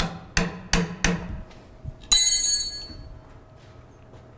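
Three short knocks, then a single sharp metallic clang about two seconds in that rings on brightly for about a second: a steel hand tool striking the robot's metal housing.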